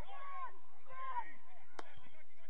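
Faint, distant shouts and calls of voices across the pitch during open play, with one sharp knock near the end.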